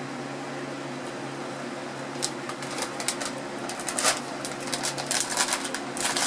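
Steady low room hum, then from about two seconds in a run of short crinkles and rustles from a plastic popcorn bag being handled, getting busier toward the end.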